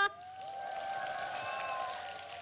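Outdoor audience applauding and cheering in response to a thank-you, swelling after a moment and easing off near the end, with a faint held tone underneath.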